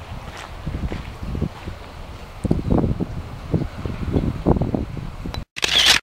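Footsteps on wet gravel and wind and handling noise on a handheld camera's microphone, irregular low thumps that grow stronger about halfway through. Near the end the sound cuts out briefly, then a short, loud burst of noise follows.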